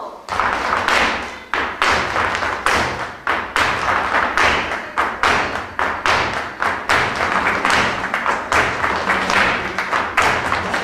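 Flamenco footwork (zapateado): dancers' shoes stamping and tapping on the stage floor in a steady rhythm, a couple of heavy strikes a second with lighter taps between, over flamenco music. It starts suddenly just after the beginning.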